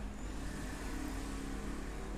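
Faint, steady low background hum, with a few weak steady low tones under it and no distinct events.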